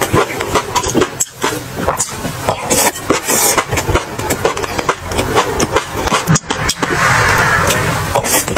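Close-miked eating sounds: a person chewing and smacking a soft, wet mouthful, with a dense run of quick wet clicks. A longer hissing slurp near the end as a large spoonful goes in.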